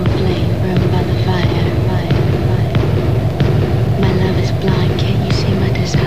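Music with a steady beat and a low sustained bass, with a voice heard over it.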